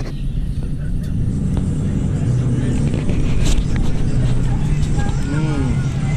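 A steady low engine hum, with a person's voice briefly near the end.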